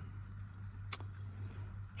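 A steady low hum with one short, sharp click about a second in.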